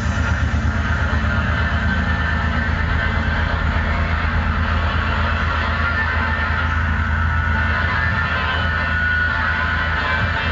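A live rock band playing loud: drum kit and electric guitar, with a heavy, steady low end.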